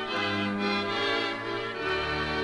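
Orchestra playing the instrumental introduction of a 1943 78 rpm record, before the vocal. It holds full chords, the harmony shifting at the start and again near the end.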